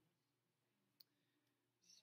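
Near silence: room tone, with one faint, short click about halfway through.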